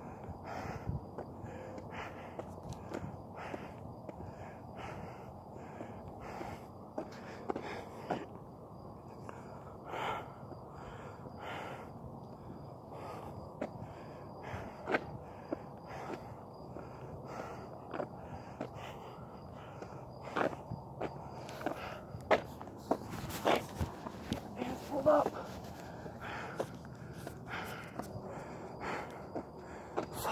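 Footsteps of a person walking at a steady pace, about one and a half steps a second, with a few louder breaths or vocal sounds about two-thirds of the way through, from a walker short of breath.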